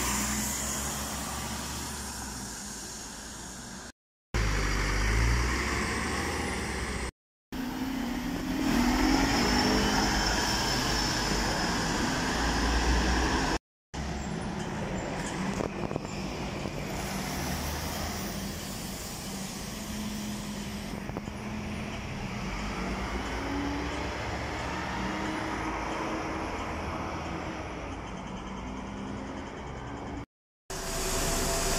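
City buses passing and pulling away in street traffic, their engines revving up as they accelerate, in several short clips cut together with brief silent gaps between them.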